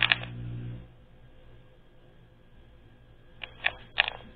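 A few light clicks over a low hum that cuts off suddenly about a second in, then quiet room tone, with two or three more clicks near the end.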